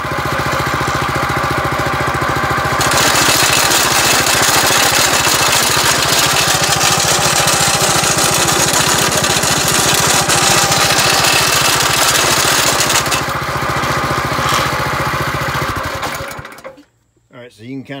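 Small single-cylinder engine of a Billy Goat reciprocating core aerator running, driving its camshaft and hollow tines up and down with a steady clatter. It runs louder and brighter from about three seconds in until about thirteen seconds, then cuts off shortly before the end.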